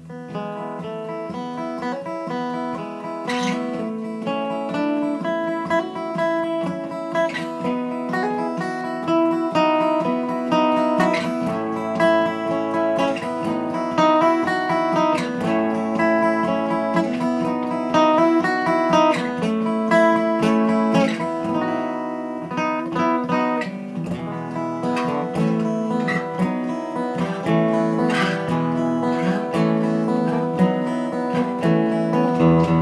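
Solo steel-string acoustic guitar playing an instrumental intro, many ringing notes, coming in suddenly right at the start.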